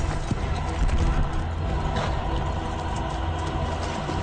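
Several horses galloping hard on a dirt track: a fast, dense run of hoofbeats.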